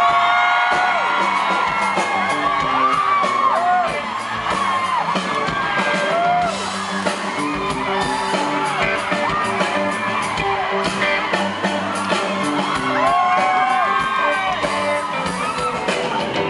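Live rock band playing, with electric guitar, at concert volume in a large venue, while the audience whoops and yells over the music again and again.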